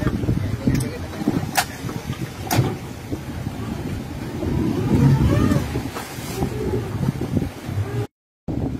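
Speedboat engine running at low throttle as the boat manoeuvres alongside a jetty, with water churning around the hull and wind on the microphone. Two sharp knocks about a second apart near the start.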